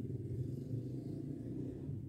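A low, steady background rumble, with no distinct event standing out.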